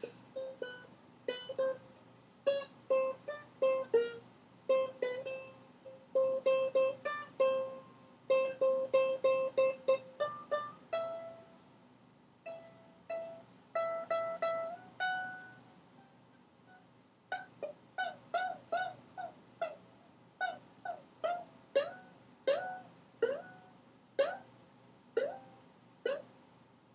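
Ukulele picked note by note rather than strummed: first one note repeated quickly, then short higher phrases with brief pauses between them. Near the end come spaced single notes that each slide slightly up into pitch.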